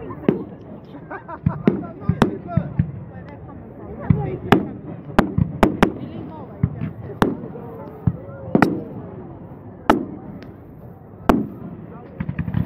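Aerial firework shells bursting: about a dozen sharp bangs at irregular intervals.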